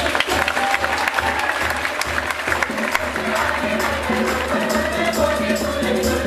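Mixed high school choir singing over a beat of hand drums, with a burst of clapping over the music in the first few seconds that thins out about halfway through.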